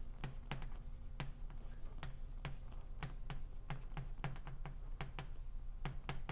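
Chalk clicking and tapping on a blackboard as a line of text is written: a quick, irregular run of sharp clicks, about three a second.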